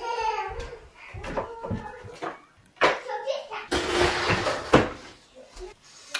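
A young child's high voice babbling without clear words, with a few sharp knocks as a small wooden table and chair are set down on the floor.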